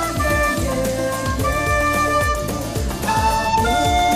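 Recorder playing a slow melody of held notes over a pop backing track with a steady drum beat.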